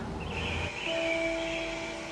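Quiet soundtrack of an animated commercial playing back: a soft hiss, then a steady held tone that starts about a second in and runs on.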